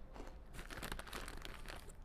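A plastic snack packet crinkling irregularly as it is handled.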